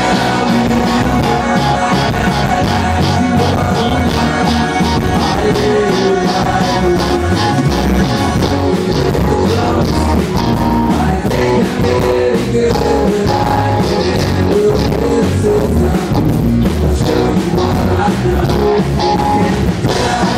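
Live rock band playing loudly with electric guitar, bass, keyboard and accordion over a steady beat. The bass overloads the small handheld recorder's microphone, so the low end sounds distorted.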